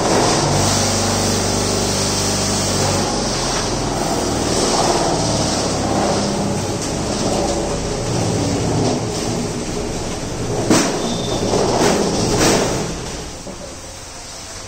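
Machinery running steadily with a low hum whose pitch shifts a little, and two sharp knocks near the end.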